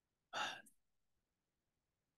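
One short sigh or breath out, close to the microphone, lasting under half a second. It comes shortly after the start and is followed by silence.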